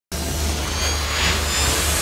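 Intro sound effect for an animated logo: a low rumbling drone under a steady rushing whoosh, starting abruptly.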